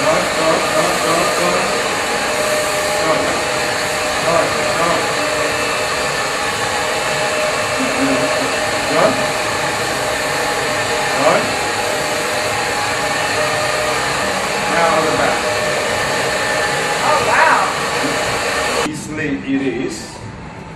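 Hair dryer blowing steadily, then cutting off suddenly near the end.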